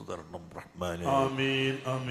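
A man's voice intoning a prayer, drawing out a long, steady chanted note from about a second in.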